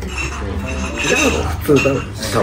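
Ceramic ramen spoon scooping fried rice from a ceramic plate, scraping and clinking against it a few times.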